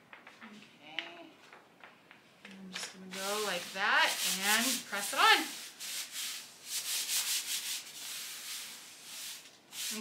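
Hands rubbing and smoothing a sheet of sticky embroidery stabilizer onto the inside of a heavy canvas jacket: a run of scratchy rubbing strokes, denser from about three seconds in. A brief wordless voice sound rises and falls around the middle.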